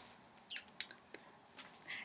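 Faint handling sounds of plush baby toys being put down and picked up: a few small, brief clicks and soft rustles.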